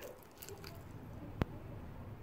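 Faint low rumble with a single short, sharp click a little after halfway.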